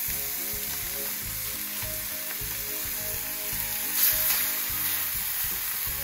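Steak searing in a smoking-hot, oiled cast iron skillet: a steady sizzle that flares up briefly about four seconds in.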